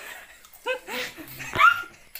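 A person's short, high yelping cries, a few rising yelps in quick succession, reacting to the burn of the super-hot Jolo Chip.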